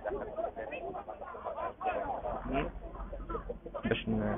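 Crowd of football fans outside a stadium, many voices talking and calling out over one another.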